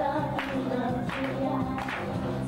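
A pop song performed live on stage: women's voices singing over a band track, with a steady beat hitting about every 0.7 seconds.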